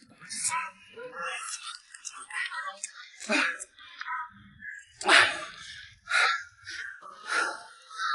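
A man catching a large Muscovy duck: irregular bursts of wing flapping and scuffling, the loudest about five seconds in, mixed with his wordless grunts and breathing.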